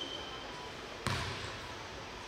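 A single basketball bounce on a hardwood gym floor about a second in, a sharp thud with a short echo from the hall.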